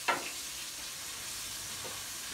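A short scrape or knock right at the start as a glass loaf dish is lifted off the oven rack, then a steady low hiss of kitchen background noise.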